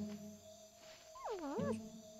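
A cartoon animal's short cry that dips in pitch and swoops back up, over sparse music with low sustained notes.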